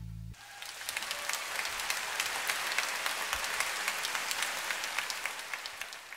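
A sustained musical chord cuts off just after the start, and a concert audience applauds. The clapping swells, holds, then dies away near the end.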